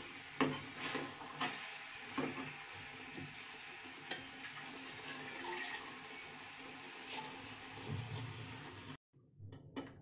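A slotted metal spoon stirring and scraping soya chaap through thick masala in a metal kadhai, with a steady sizzle as a little just-added water cooks into the hot masala. The spoon clinks against the pan a few times, and the sound cuts off suddenly near the end.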